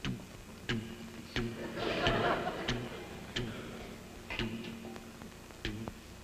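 Heartbeat sound effect: sharp, low knocks, about one every two-thirds of a second, as the fighter's heart is tested. A short burst of audience laughter comes about two seconds in.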